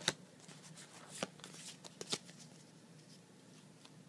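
A stack of Pokémon trading cards handled in the hand: a few short, crisp card slides and flicks, the sharpest right at the start and two close together about two seconds in, otherwise quiet.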